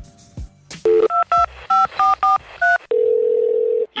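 Touch-tone telephone keypad dialing: a rapid string of about seven short DTMF beeps, each a pair of steady tones, followed by one steady tone on the line lasting about a second.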